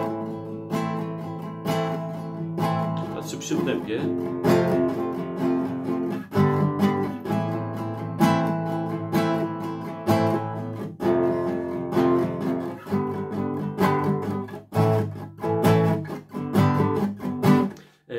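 Classical nylon-string guitar strumming an A chord in even strokes. Every fourth stroke, on the first beat, is played harder, giving a louder strum about every two seconds.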